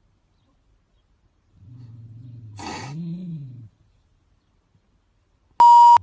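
A low, drawn-out wordless vocal sound lasting about two seconds, rising and then falling in pitch, with a brief hiss in the middle. Near the end comes a short, very loud, steady one-pitch beep.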